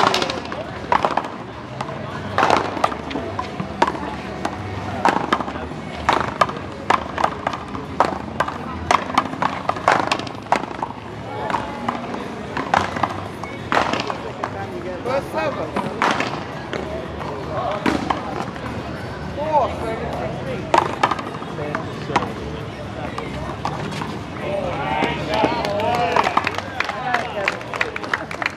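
Paddleball rally: repeated sharp knocks of solid paddles hitting the ball and the ball striking the concrete wall and court, with men's voices calling between shots.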